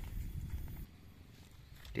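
Faint, low background rumble that drops to near silence about a second in; a narrating voice starts at the very end.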